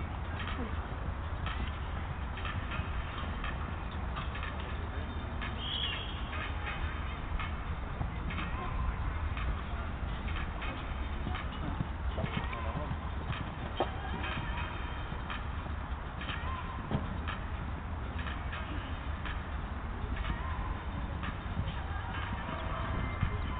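Horse cantering round a show-jumping course on sand footing, its hoofbeats heard as scattered soft knocks over a steady low rumble.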